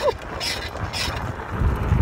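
BMX bike being ridden: mechanical clicking from the bike about twice a second, with low wind rumble on the handlebar-mounted microphone growing near the end as the bike gets going.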